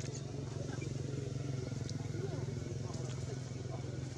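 Indistinct voices of people talking in the background over a steady low drone, with a few short, squeaky sounds scattered through.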